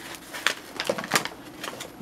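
Paper flour bag crinkling and rustling as its folded top is unrolled and pulled open, in a series of short, irregular crackles.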